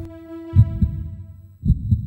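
Heartbeat sound effect: low double thumps, two beats about a second apart, with a held musical note fading out over the first beat.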